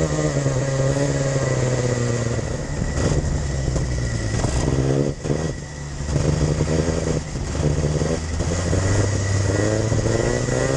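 Racing kart engine heard from an onboard camera. Its revs fall over the first couple of seconds, the sound dips briefly around five seconds in, and the revs climb again near the end.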